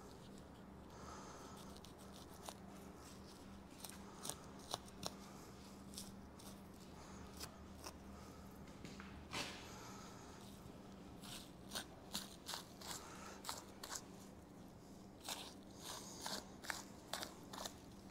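Faint, scattered snicks and crackles of a knife blade cutting through connective tissue as a deer hide is pulled away from the meat at the armpit.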